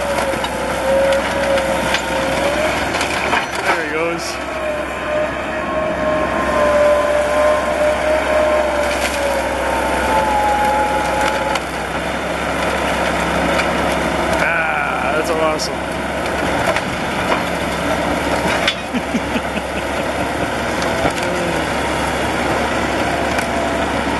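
Caterpillar D8 crawler dozer running under load as it tracks along dragging a crushed pickup truck caught on its rear ripper. Clanking tracks and scraping sheet metal, with a wavering high squeal and scattered sharp knocks.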